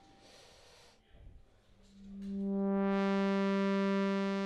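Korg ARP 2600 FS synthesizer: quiet for about two seconds, then a steady buzzy tone, a low note rich in overtones, fades in and holds, sounding through the synth's type 1 filter.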